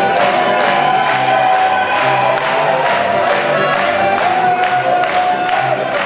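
Slovenian folk band playing an instrumental passage: a diatonic button accordion carries the melody over strummed acoustic guitar, with a steady beat about twice a second.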